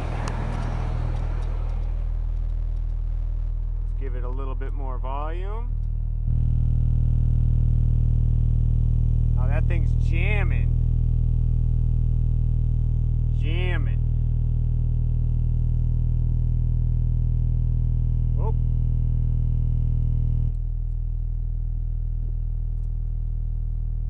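Kicker CompC 12-inch car subwoofer in a sealed box playing a steady low-bass test tone, stepping up louder about six seconds in and dropping back down near twenty seconds. It sounds really clean, and the owner doesn't think it is clipping.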